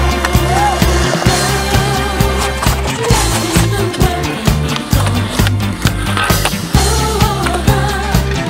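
Music with a steady beat and bass line, with skateboard sounds on concrete mixed in: wheels rolling and the board landing.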